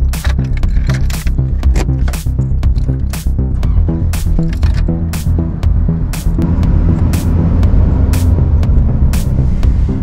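Background music with a beat and a deep bass line.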